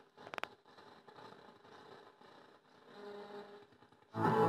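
Faint hiss and crackle from a Grundig 4017 Stereo valve radio tuned between stations, with a quick run of clicks about a third of a second in and a faint steady tone near the end.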